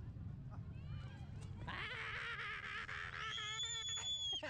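A small child squealing with glee: a high, wavering squeal that rises into a long, very high held shriek near the end.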